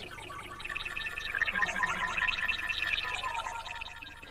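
A synthesized section-transition sound effect: a fast bubbling warble of several high tones that swells and then fades away.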